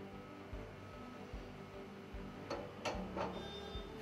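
Quiet background music, with two light metallic clicks about two and a half and three seconds in as the pump inlet is set down over the shaft onto the assembly tool.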